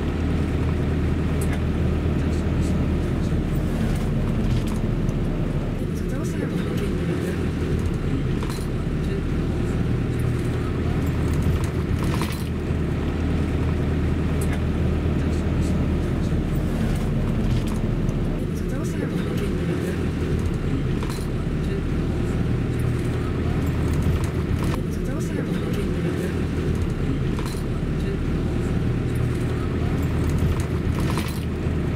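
Steady low engine and road rumble of a car heard from inside its cabin while it drives slowly, with a few brief clicks.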